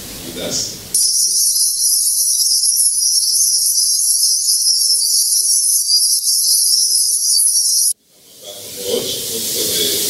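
Loud, steady electronic hiss confined to high pitches, starting suddenly about a second in and cutting off abruptly about eight seconds in, with the room sound dropping out beneath it.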